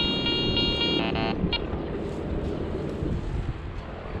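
Metal detector sounding its target signal: a steady buzzy tone cut on and off in short pulses, stopping about a second and a half in, which means metal lies in the ground under the coil. After it comes only a low, even rustling noise.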